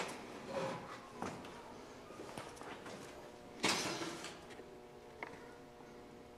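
Quiet room tone with a few faint, scattered knocks and rustles; the loudest is a short scuff a little past halfway.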